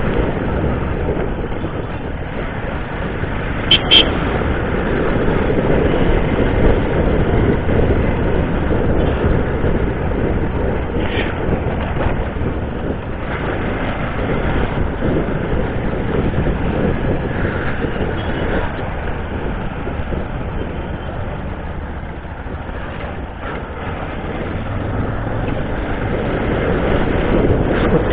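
A motorcycle on the move at night, heard from the bike itself: steady rushing road and wind noise with the engine running underneath. A brief sharp click comes about four seconds in.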